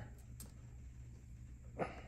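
Quiet room tone with a steady low hum and two faint clicks shortly after the start, as hands work a suction cup and pry tool on the iMac's glass panel.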